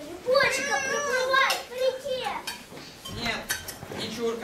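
Children's voices, with spoons clinking against metal bowls a few times.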